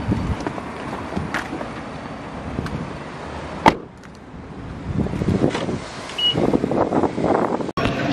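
Parking-lot car noise, a low steady rumble, with a single sharp click about halfway through.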